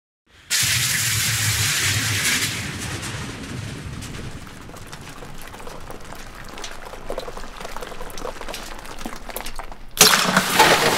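Designed logo-sting sound effect. A rushing hiss with a low rumble starts about half a second in and dies down after about two seconds. It gives way to a fizzing crackle whose clicks grow denser and louder toward the end.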